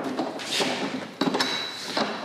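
SawStop Jobsite Saw PRO's folding rolling stand being unlocked and tilted up onto its wheels: metal clanks and rattling, with a clank about a second in and a thin high ring near the end.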